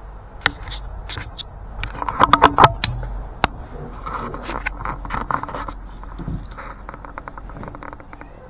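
Handling noise: clicks, taps and scrapes of a fixed-blade knife, its cardboard box and plastic packaging being moved on a plastic table. A close run of sharp clicks about two to three seconds in is the loudest part, over a steady low rumble.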